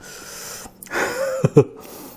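A man draws in a breath with a hiss, then gives a short voiced exclamation and two sharp mouth clicks, a reaction to a very sour bite of young (unripe) mango.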